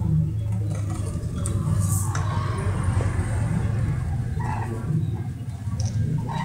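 A steady low rumble, like an engine running, lasts throughout, with a few brief higher sounds over it.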